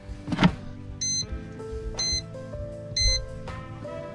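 Air fryer basket knocking shut, then the air fryer's electronic beeper giving three short high beeps about a second apart, over background music.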